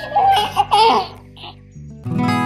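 Newborn baby crying: a few short, wavering wails in the first second, then a brief weaker one, over soft background music.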